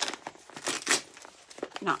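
Crinkling and tearing of a mailed package's taped wrapping as it is worked open by hand: a few short rustles, loudest about a second in.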